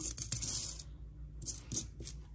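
Jefferson nickels clinking against each other as a hand slides and spreads them across a paper towel. There is a quick run of clinks in the first second, then a few scattered ones later.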